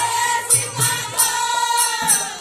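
Women's chorus singing a Matua devotional kirtan in unison, holding a long note, over a barrel drum and a metallic jingle struck on a steady beat about two to three times a second. The drum drops away about halfway through.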